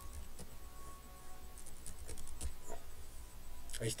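Keys being typed on a computer keyboard: a quick run of light key clicks, bunched about halfway through, as a command is entered.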